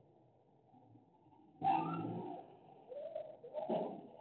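An animal calling: a pitched call about one and a half seconds in, lasting under a second, then a run of shorter calls near the end.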